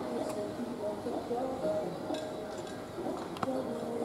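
Indistinct voices of spectators and people around the mat talking in a large hall, with a single sharp click about three and a half seconds in.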